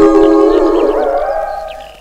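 A man wailing in one long, drawn-out comic cry that slowly fades away toward the end.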